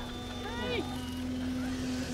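Distant 125 cc two-stroke kart engine running at a steady high pitch as the kart climbs the hill under power.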